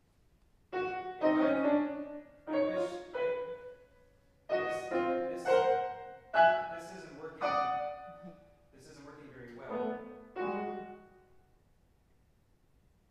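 Concert grand piano played in short groups of struck chords, each left to ring, with brief pauses between them. It begins about a second in and dies away about a second before the end.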